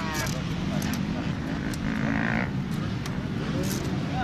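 Motorcycle engine idling steadily, with a person's voice briefly over it.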